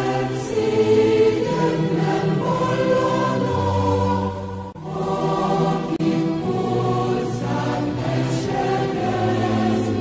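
Background music of a choir singing slow, sustained phrases, with a short break between phrases about halfway through.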